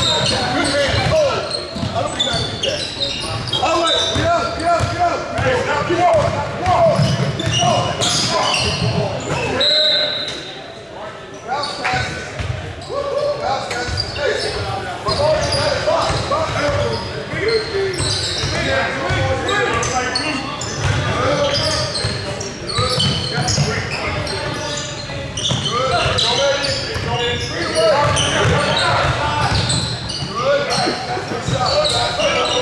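Basketball bouncing on a hardwood gym court during play, amid overlapping shouts and chatter from players and spectators, echoing in a large hall.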